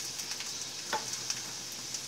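Sliced onions sizzling in hot oil in a kadai: a steady hiss with scattered crackling pops, one sharper pop about halfway through.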